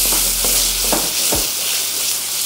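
Cod fillets and sliced garlic frying in hot oil in a pan: a steady sizzle broken by a few sharp crackles.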